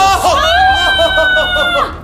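A person's long, high-pitched scream of disgust, held steady for about a second and a half and cut off just before the end, with another voice going underneath it.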